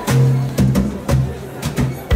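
A live band playing: low bass notes with several drum kit hits in the intro of a soul-rock song.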